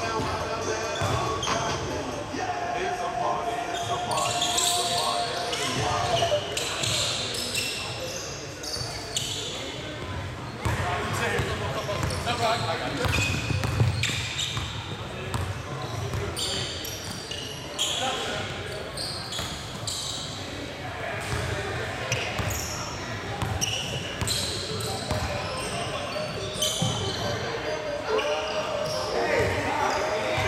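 Basketball game play in a gym: a basketball bouncing on the hardwood court as it is dribbled, amid indistinct players' voices, echoing in the large hall.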